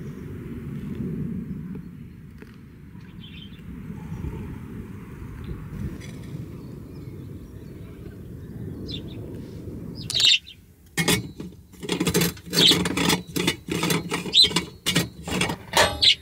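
A low steady rush for the first ten seconds or so, then a quick run of sharp metallic clicks, clinks and scrapes from a stainless steel stovetop coffee maker being filled with ground coffee, screwed together and set down on the stove.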